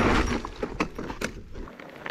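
Mountain bike coming to a stop on a rough, bushy trail: the rolling trail noise dies away early on, then a few scattered clicks and rattles from the bike and its gear as it halts.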